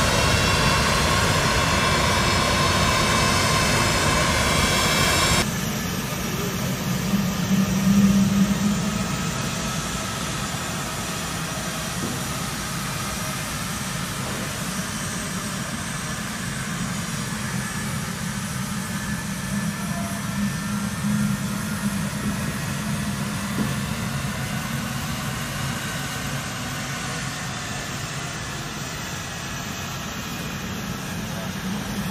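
C-17 Globemaster III jet engines running steadily: a high whine over a low rumble. About five seconds in, the sound changes sharply, the whine falls away, and a steadier low rumble carries on.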